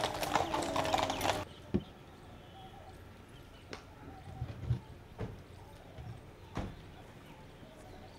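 Horse hooves clip-clopping on a paved road from a ceremonial horse-drawn carriage, cut off abruptly about a second and a half in. After that only a low background with a few scattered sharp knocks.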